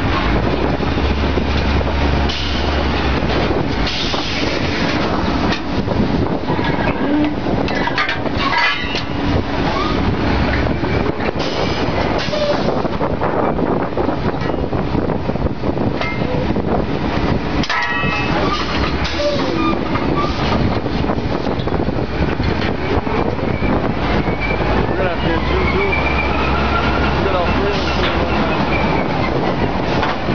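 Drilling rig floor machinery running loudly without a break, with a low hum near the start and again near the end, and a few sharp metal knocks from the pipe-handling gear.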